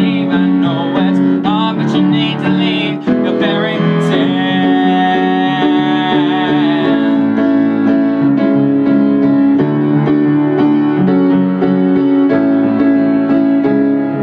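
Piano playing an instrumental passage between sung verses of a song. A held sung note with vibrato trails off in the first few seconds.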